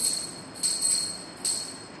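Small metal puja hand bell rung in an even rhythm, three strokes about 0.8 s apart, each a high ringing tone that fades before the next.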